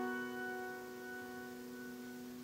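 A soft keyboard chord held and slowly fading, several notes ringing together.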